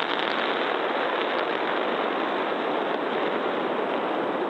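Steady, even rushing noise of a Super Heavy booster's Raptor engines firing in a static fire, heard through a ground camera's band-limited microphone.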